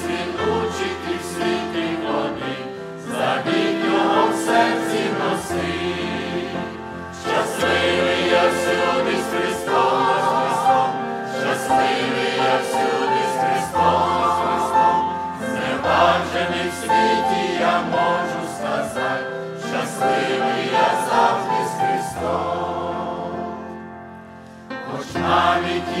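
Mixed church choir singing a Ukrainian hymn in harmony with accompaniment. The sound thins out briefly about two seconds before the end, then the choir comes back in.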